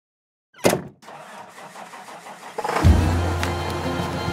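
Channel intro sting: a sharp hit a little over half a second in, a faint hiss, then near three seconds in a loud, steady low drone with music that carries on.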